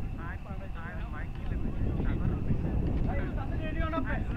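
Distant voices of people calling and talking, over a steady low rumble that grows louder about a second and a half in.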